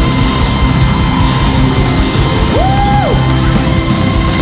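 Live band playing loud rock music with no singing. About two and a half seconds in, one held note slides up, holds briefly and slides back down.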